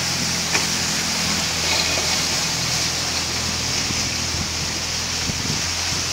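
Steady rush of wind and water past a sailing trimaran moving at about 10.6 knots, with a constant low hum underneath.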